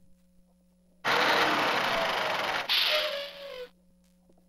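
Electronic sound effect from a Bright Starts Having A Ball Swirl And Roll Truck toy's speaker: a loud rushing noise starts about a second in. It breaks briefly near the middle and cuts off shortly before the end.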